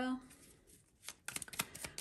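Tarot deck shuffled by hand: about a second in, a quick run of crisp card-on-card flicks starts up and keeps going.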